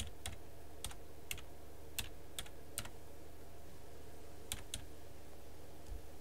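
A few scattered computer keyboard keystrokes, about nine sharp clicks at irregular intervals with a pause near the middle, over a steady low hum.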